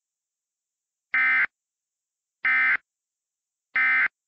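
Emergency Alert System end-of-message data bursts: three short, identical digital warbles about 1.3 seconds apart. They signal the end of the tornado warning message.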